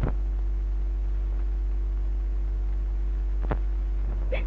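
Steady low electrical hum of an old film soundtrack, with a sharp click right at the start and another about three and a half seconds in.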